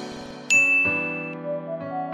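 A single bright ding about half a second in, ringing for just under a second, as soft electric piano music begins underneath.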